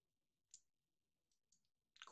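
Near silence with a few faint, short clicks: one about a quarter of the way in and a couple near the end. The last fits a computer mouse being right-clicked.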